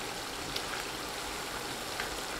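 Chunks of beef frying in hot oil in a wok, a steady sizzle.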